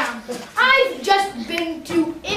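A boy's voice speaking in character in short broken phrases, with a few faint hand sounds.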